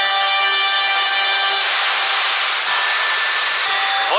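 Trailer soundtrack: a held musical chord that gives way, about a second and a half in, to a loud, steady hiss-like rushing noise.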